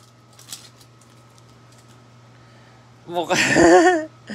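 Faint crinkling and clicks of a shiny trading-card pack wrapper being torn open and the cards slid out, then a person's drawn-out voice, the loudest sound, for about a second near the end.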